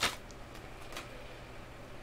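A laptop hard drive being pulled out of its anti-static bag: a short click at the start, then faint rustling of the bag.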